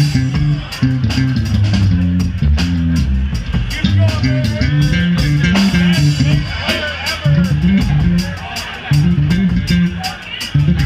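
Live band playing an instrumental groove: a busy electric bass line leads, over a steady drum-kit beat with electric guitar notes above it.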